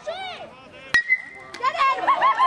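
A metal baseball bat hitting a pitched ball: one sharp ping about a second in that rings on briefly. Spectators start shouting soon after.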